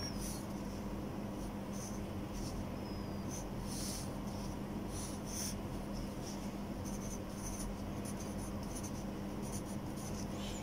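A graphite pencil drawing and writing on paper: short strokes come in irregular bursts with pauses between them as a rectangle is drawn and letters are written. A steady low hum runs underneath.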